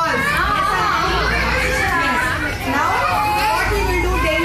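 A crowd of young children talking and calling out all at once, many high voices overlapping without a break.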